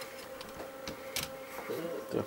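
Light metal clicks and knocks from a hinged valve-amplifier chassis being folded shut, the clearest a little over a second in. It does not close fully: a trimmer gets in the way.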